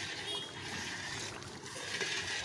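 A long metal ladle stirring hot korma gravy in a large iron kadhai over a wood fire: a noisy, sloshing, scraping hiss that swells and fades with the strokes.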